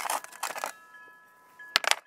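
Quartz geodes clattering and clinking against one another and a metal tray as a hand shifts them, mostly in the first second, with a couple of sharp knocks near the end. Faint steady high ringing tones sit underneath.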